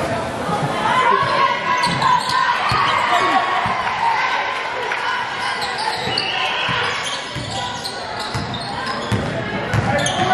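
Gym crowd noise at a basketball game: many voices talking and shouting, echoing in the large hall, with a basketball bouncing on the hardwood court.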